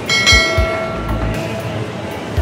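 Notification-bell chime sound effect from a subscribe-button animation: one bright, multi-toned ding that rings out and fades over about a second and a half, over background music with a beat.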